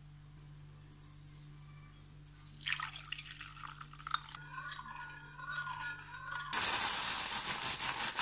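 Milk poured from a pot into a ceramic cup onto instant coffee granules, splashing and then filling with a wavering tone over a low steady hum. About six and a half seconds in, a much louder steady rushing noise takes over.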